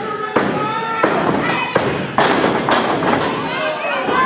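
Several heavy thuds of wrestlers' bodies hitting the ring mat, the loudest a little past halfway, over shouting crowd voices.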